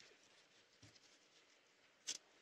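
Near silence: faint room tone, with one soft tick a little under a second in.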